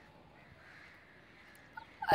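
Near silence: faint outdoor ambience with distant crows cawing a few times, and a small click near the end.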